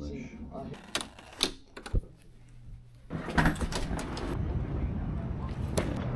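A few sharp clicks and knocks in the first half, then from about three seconds in a Harley-Davidson Low Rider ST's Milwaukee-Eight 117 V-twin idling steadily while it warms up.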